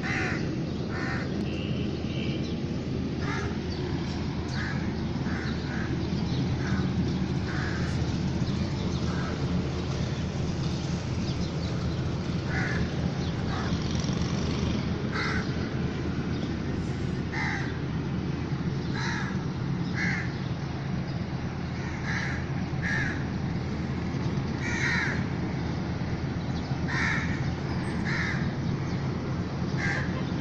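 Crows cawing again and again, short calls every second or two, over a steady low background rumble.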